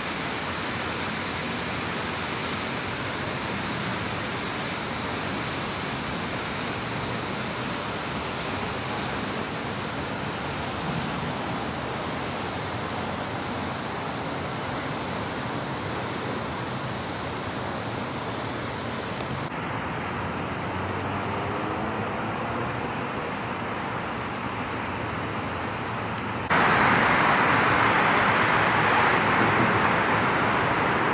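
Steady rushing outdoor city ambience with distant traffic. The top end dulls at about 20 s, and the noise turns louder and brighter from about 26 s.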